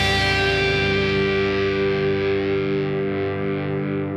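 Distorted electric guitar holding a final chord that rings on and slowly fades.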